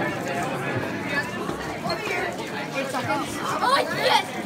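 Indistinct background chatter of several people talking in a room, with one voice coming up louder near the end.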